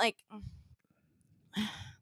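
A woman's breathy sigh near the end, after a short spoken word and a quiet pause.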